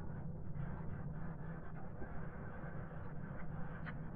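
Steady low background hum with a few faint clicks of a plastic spoon in a foam food tray, one just before the end.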